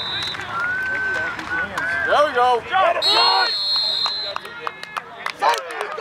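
Sideline spectators and coaches shouting and cheering during a football play, with a referee's whistle blowing a steady shrill blast for about a second near the middle, and a brief whistle chirp at the very start.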